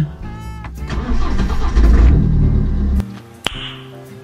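BMW 120d race car's 2.0-litre N47 four-cylinder diesel cranking and firing up, then running loudly for about two seconds before the sound cuts off abruptly about three seconds in. A single sharp click follows near the end.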